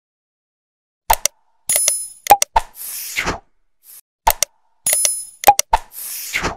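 Subscribe-button animation sound effects: sharp click-like pops, bright bell dings and a whoosh, starting about a second in and repeating as a loop about every three seconds.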